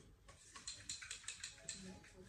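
Faint, rapid light clicks or taps, roughly eight to ten in about a second, followed near the end by a brief low murmur of voice.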